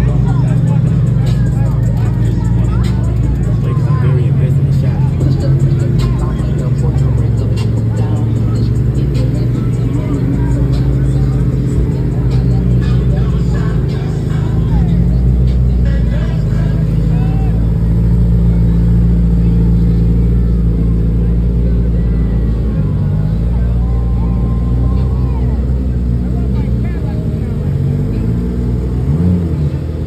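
Lifted side-by-side UTVs rolling past at low speed, their engines running with a steady low rumble, mixed with music and voices.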